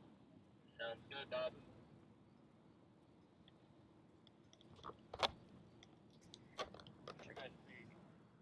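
Quiet low background noise with brief snatches of faint voices about a second in and again near the end. One sharp click a little after halfway is the loudest sound.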